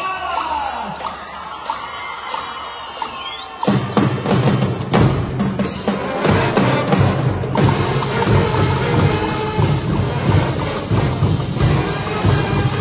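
Marching band of brass and drums playing. A lighter passage of held brass tones opens, then the full band with drums and low brass comes in loudly just under four seconds in and plays on with a steady beat.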